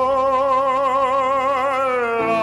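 Male bass-baritone voice holding one long sung note with a wide, even vibrato, over quieter accompaniment.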